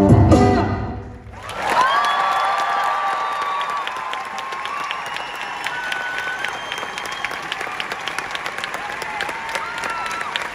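A solo cello piece ends about a second in, then a large concert audience applauds and cheers, with several long whistles held over the clapping.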